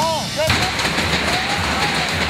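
Music with a melody breaks off about half a second in, and a sudden loud burst of noise takes over, then holds as a steady rush.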